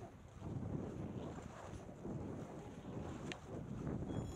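Wind buffeting a 360 camera's microphone as a skier starts moving, a low noise that swells about half a second in. A brief click comes about three seconds in.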